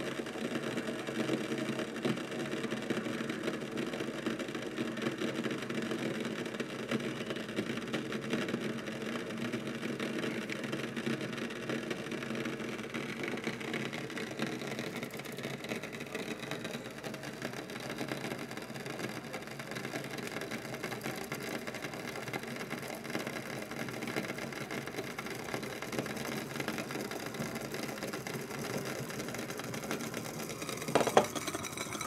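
Water boiling in the Bodum Pebo vacuum coffee maker: a steady bubbling rumble as steam pressure from the heated lower glass bowl pushes water up through the siphon tube into the upper bowl, where it steeps with the coffee grounds.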